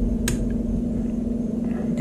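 Steady low room hum with one light click about a quarter of a second in, in the kind of sound made by a wooden axe handle being set against or tapping a metal tool chest.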